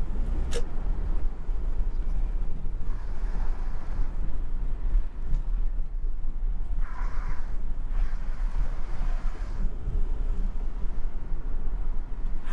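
Steady low rumble of a taxi's engine and tyres heard from inside the car as it drives slowly along a narrow street, with a single sharp click about half a second in.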